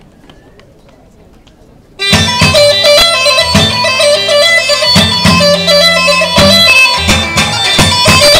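After two seconds of faint background murmur, loud Thracian folk dance music starts abruptly, led by a bagpipe, the Thracian gaida, with a steady held tone over plucked strings and moving bass notes.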